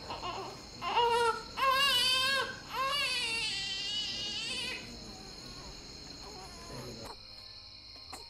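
A newborn baby crying just after birth: three wailing cries in the first five seconds, the last one the longest. Crickets chirp steadily underneath.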